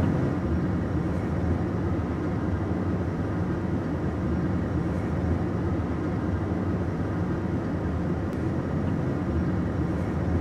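Steady low rumble of a running vehicle, heard from inside the cabin.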